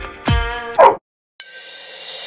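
Upbeat dance music with a steady kick drum cuts off right after a short loud sound about a second in. After a moment of dead silence, a bright, high ding rings out with a hissy tail.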